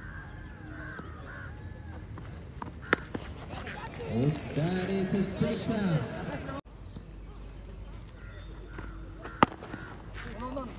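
Cricket bat striking the ball with a sharp crack about three seconds in, followed by players shouting across the field. Another sharper crack of bat on ball comes near the end.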